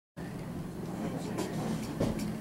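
Low steady room hum with faint background voices.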